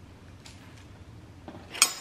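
A hard-boiled egg being peeled by hand: quiet shell crackling and handling, with a faint click early and a sharper click near the end.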